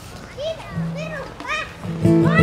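A child's voice calling out three short rising-and-falling cries about half a second apart, over a held low instrument note. The band comes in loudly at the very end.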